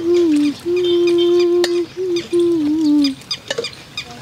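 Small birds chirping repeatedly in the background. Over them runs a louder low tone held in long notes that step down in pitch, from an unidentified source.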